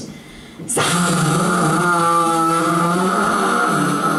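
A woman's voice holding one long, rasping, throaty sound at a steady pitch for about three and a half seconds, starting under a second in. It is an exaggerated guttural Arabic "h" drawn out in the middle of the name Zahra.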